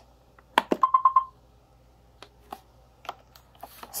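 Two clicks as the Clean button of an iRobot Roomba is pressed, then a quick run of about five short beeps from the Roomba as its manual-advance test mode steps on to the next test. A few faint clicks follow.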